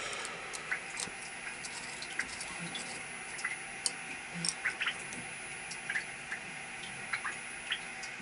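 Scattered light metallic clicks and taps of a small steel blank and clamp being handled and tightened with an Allen key on a milling fixture, at irregular intervals over a steady faint hiss.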